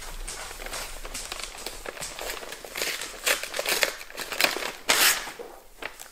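Plastic mailer bag and paper envelope rustling and crinkling as they are handled and opened, in uneven spurts with the loudest crackle about five seconds in.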